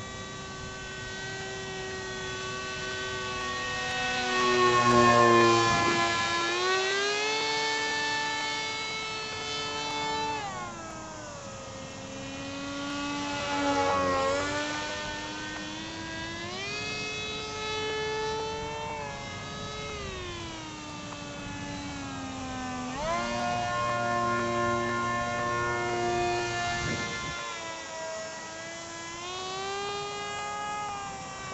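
Motor of a small radio-controlled model airplane in flight, a buzzing whine whose pitch rises and falls again and again as it changes speed and distance. It is loudest about five seconds in.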